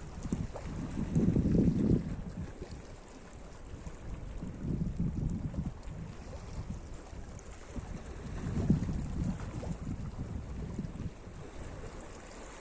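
Small waves washing in over rocks at the shoreline, swelling and easing three times, the first swell the loudest, with wind buffeting the microphone.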